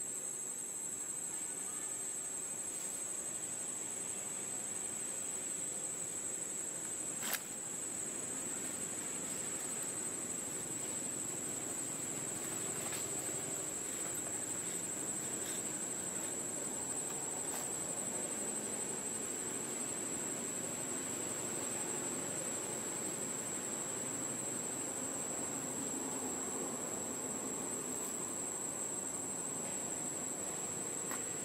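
Steady, unbroken high-pitched drone of insects in the surrounding forest, with one sharp click about seven seconds in.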